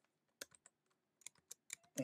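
Faint keystrokes on a computer keyboard: a few quick key presses, a short pause, then a few more.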